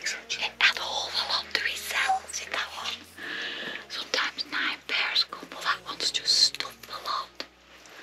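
Two people talking in whispers, in short hushed phrases.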